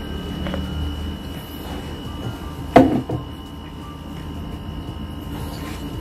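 A steady low hum and a faint high-pitched whine, broken a little before halfway by a single sharp knock, the loudest sound here.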